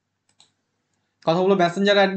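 Two faint quick clicks at a computer, close together, then a man's voice starts about a second in.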